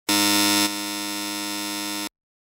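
A steady electronic buzzer tone that starts abruptly, drops to a softer level after about half a second, and cuts off suddenly at about two seconds.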